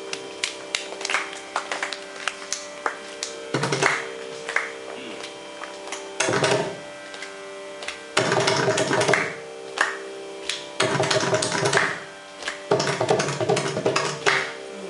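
Mridangam solo (thani avartanam): sharp single drum strokes between five fast, dense flurries of strokes, the later flurries about a second long, over a steady pitch drone.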